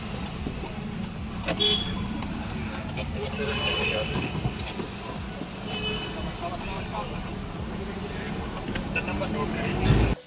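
Steady road and engine rumble inside a moving car in slow town traffic, with voices and a couple of short horn toots from the street.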